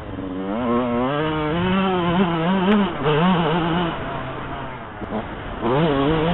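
Yamaha YZ125 two-stroke engine revving as the bike is ridden, the pitch climbing and wavering with the throttle. It drops off about four seconds in and revs up again near the end.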